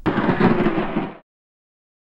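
A loud burst of rough noise about a second long that cuts off suddenly into silence.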